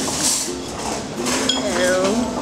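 Restaurant table sounds: voices in the background and a clink of tableware about one and a half seconds in.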